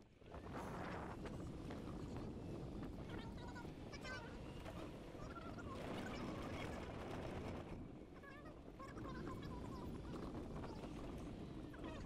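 Faint outdoor ambience: a steady low rumble with short bird calls chirping a few seconds in and again in the second half.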